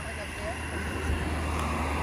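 A vehicle approaching on the roadside road, its engine and tyre noise growing louder through the second half, over the steady high-pitched drone of insects in the forest.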